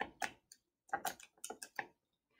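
Faint keystrokes on a calculator: a string of separate short clicks as a figure is keyed in.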